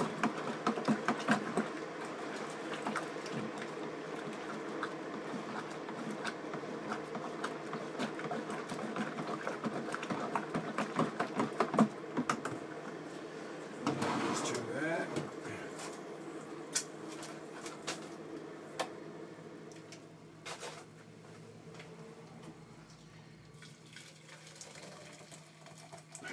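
Water being poured from a kettle into a homebrew fermenting bucket to top up the wort, splashing and spilling. The pouring is dense for the first half, rises in pitch around the middle, then tails off.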